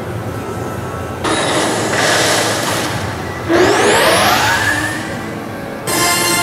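Coin pusher arcade machine's electronic game sound effects through its speakers. A loud rushing whoosh comes in about a second in, then a rising sweep about halfway through, and music starts again just at the end.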